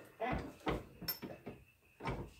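Hotronix Fusion heat press being pulled shut by its handle: a few short clunks and knocks from the handle and upper platen as the press closes down on the tag.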